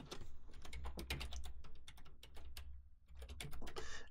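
Typing on a computer keyboard: a quick run of keystrokes, a short pause about two and a half seconds in, then a few more keys near the end.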